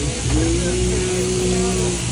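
Electric sheep-shearing handpiece on an overhead drive's down tube, running steadily as it cuts through the fleece.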